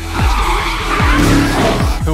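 Loud action-film sound effects over music: a long harsh screeching noise, with deep falling whooshes about a second apart.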